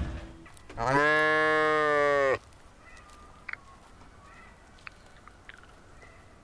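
A farm animal gives one long, even call lasting about a second and a half, which then stops abruptly. A few faint clicks follow.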